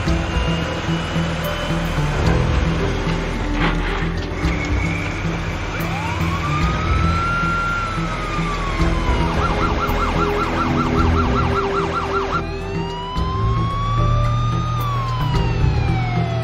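Police car siren: a slow wail that rises and falls, switching to a fast yelp of about four cycles a second about nine seconds in, then back to a slow wail near the end, over background music.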